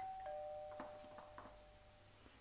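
Two-tone ding-dong doorbell chime: a higher note, then a lower note a quarter second later, both ringing on and slowly fading.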